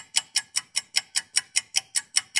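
Rapid, even ticking: sharp clicks at about five a second, like a clock-tick sound effect.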